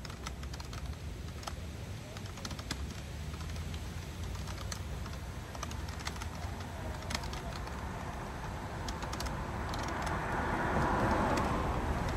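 Typing on a computer keyboard: irregular clicks of keys being struck. A steady low rumble sits underneath, and a rushing noise swells through the second half, loudest near the end.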